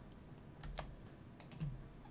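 A few faint clicks from computer controls at a desk, coming in two small groups, the first under a second in and the second about a second and a half in.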